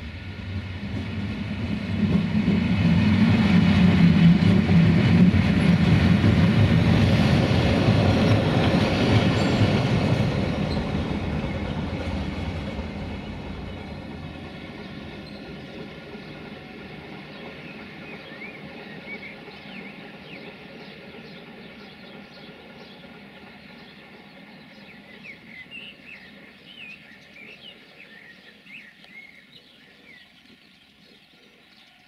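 A train led by an electric locomotive passes close by. Its rumble and wheel noise swell over the first couple of seconds, stay loud until about ten seconds in, then fade away. Faint bird chirps come near the end.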